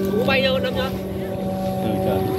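Steady drone of Vietnamese kite flutes (sáo diều) sounding from kites flying overhead, several pitches held together at once as the wind blows through the pipes.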